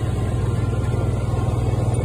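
A vehicle engine running steadily as it drives across the ice, a constant low drone.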